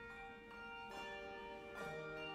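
Handbell choir ringing a slow passage: chords of handbells struck and left to ring on, with new strikes about a second in and again near the end.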